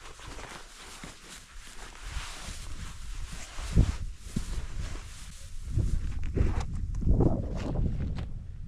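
Footsteps and rustling through grass and dry vegetation, with wind buffeting the microphone in uneven low rumbles. There are two short knocks about four seconds in, and the rustling gets louder toward the end.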